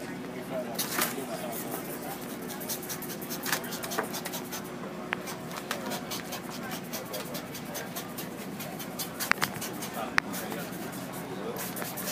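Clear plastic paint protection film crackling and clicking as it is stretched and worked over a car's hood, with a few sharper clicks about nine and ten seconds in, over the murmur of a crowd talking.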